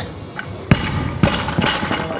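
Barbell with rubber bumper plates hitting a lifting platform: one sharp, heavy thud about two-thirds of a second in, then two more thuds about half a second apart.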